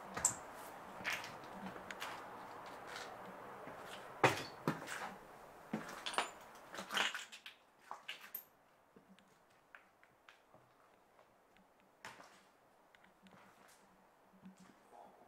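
Sharp knocks and clatters of a wooden door being handled, and footsteps as someone walks into a derelict building. A steady background hiss drops away about seven seconds in, leaving scattered footsteps and small creaks in a quiet room.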